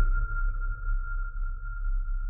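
Closing logo sound effect: a single high tone rings on steadily over a deep rumble, both slowly dying away.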